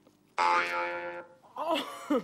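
A short comic sound effect: a steady buzzy tone that starts suddenly and lasts under a second, followed by a man's voice near the end.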